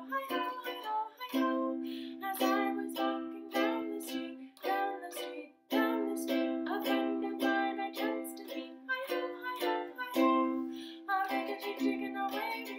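Makala ukulele strummed in a steady rhythm, the chords changing every few seconds, with a brief break about five and a half seconds in.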